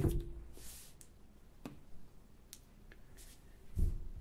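A few faint, sharp taps of fingertips on smartphone touchscreens in a quiet room, with one louder dull thump near the end.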